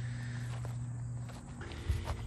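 Footsteps on grass, a few soft steps about half a second apart, with a heavier thump near the end. A low steady hum underneath fades out about two-thirds of the way through.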